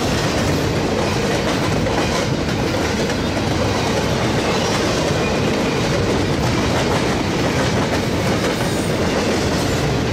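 Intermodal freight train's container and well cars rolling past close by: a loud, steady rolling noise of steel wheels on rail.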